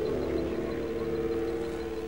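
Electronic drone of several steady held tones over a low hum, the dark ambient close of an industrial music track.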